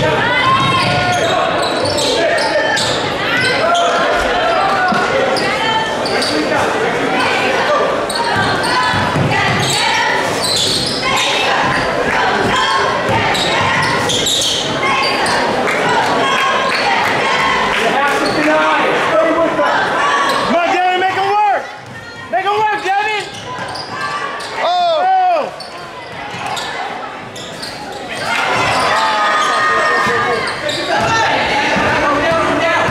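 Live basketball game in a large gym: a ball dribbling on the hardwood under steady crowd chatter and shouting, all echoing in the hall. About two-thirds through, the crowd noise drops for a few seconds and a run of short sneaker squeaks on the court stands out.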